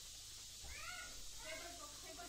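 A cat meowing faintly: one rising-and-falling call a little over half a second in, over faint voices.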